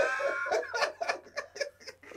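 Laughter breaking out in short repeated bursts that fade toward the end.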